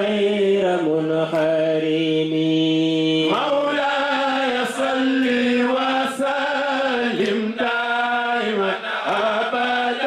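Men's voices chanting a Sufi religious song together. A long note is held about a second in, then the melody moves on in flowing phrases.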